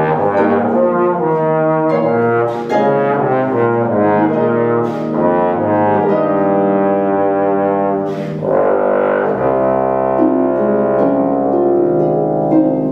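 Bass trombone playing a melodic line over harp accompaniment. A run of shorter notes gives way, after a brief break about eight seconds in, to longer held notes.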